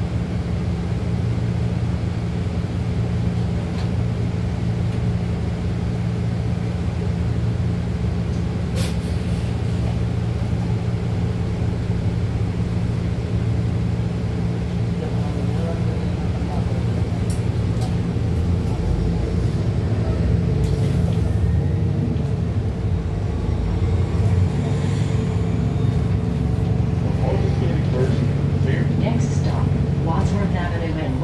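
Cabin of a Nova Bus LFS hybrid-electric city bus under way: a steady low hum from the drivetrain over road rumble, growing a little louder in the second half. A few brief clicks and rattles from the bus body come through.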